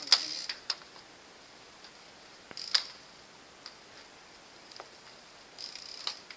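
Irregular sharp clicks and light rattles from a bicycle and the camera mounted on it as it rides, over a faint high hiss. The loudest click comes just after the start, and another about three seconds in.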